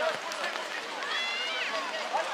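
Young children's high-pitched voices shouting and calling out across a football pitch, several overlapping, with one longer held call about a second in.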